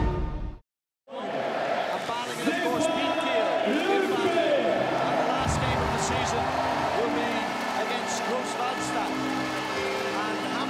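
Theme music cuts off about half a second in. After a short gap, an arena crowd takes over: many voices cheering and chanting together, with a few sharp claps or whistles.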